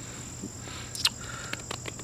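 Insects chirring steadily in a high, unbroken tone, with a few faint clicks in the second half.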